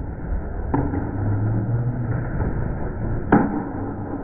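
A small candlepin bowling ball rolling down a wooden lane with a low rumble, with two sharp knocks, the louder one near the end, over the steady noise of a bowling alley.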